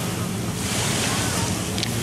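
Ocean surf washing onto a sandy beach, a steady rushing noise, with wind buffeting the microphone.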